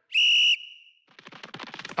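Sound effects for an animated title: a short, loud, steady high whistle tone lasting about half a second, then a fast run of clicks.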